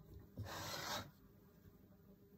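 One short rasping rub against the clay body of a teapot being formed on a wooden mold, lasting about half a second.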